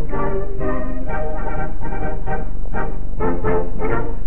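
Dance band playing a lively tune led by brass, trombones among them, in short, quickly changing phrases. It comes from an old film soundtrack with no treble.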